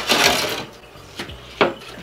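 Porcelain tile scraping as it slides along the glass bottom of an aquarium for about half a second, followed by a couple of light knocks as it settles.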